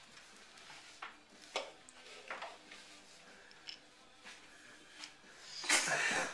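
Clear plastic packaging crinkling and rustling in short bursts as it is handled, with a louder, longer rustle near the end.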